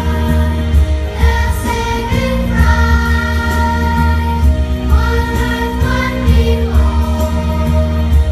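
A group of young children singing a song together over music with a steady, deep bass line.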